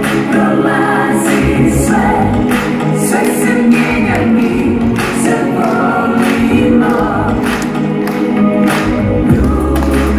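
Live pop-rock band performance: a woman singing lead, joined by a backing vocal, over electric guitar, bass guitar, keyboard and drums.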